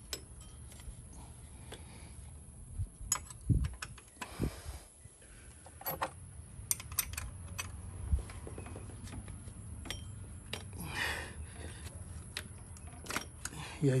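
Metal tools clicking and clinking against engine parts as a 14 mm wrench works the belt tensioner and the serpentine belt is fitted onto its pulleys, with scattered sharp clicks and a few dull knocks.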